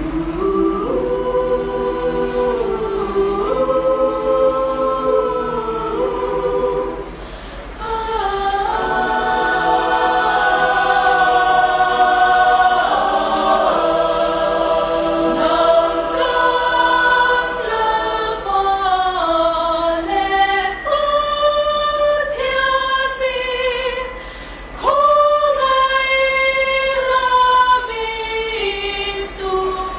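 Mixed choir of women's and men's voices singing a cappella under a conductor, in sustained chordal harmony. Phrases are held and change together, with brief breaks about seven and twenty-four seconds in.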